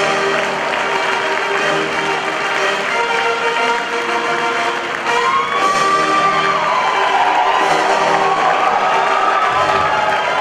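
Church music playing while a congregation claps and cheers, with gliding held notes about halfway through.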